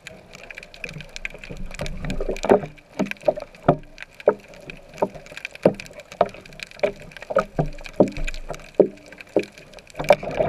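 Muffled underwater sound through a waterproof camera housing: a series of irregular knocks and pops, about one or two a second, over a low rush of moving water.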